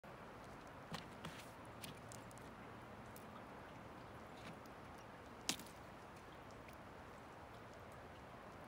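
Faint steady hiss with a handful of short, sharp clicks, the sharpest about five and a half seconds in.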